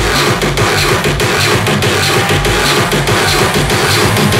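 Hardcore electronic dance music mixed live by a DJ: a dense, driving beat over heavy bass, with the bass coming in right at the start.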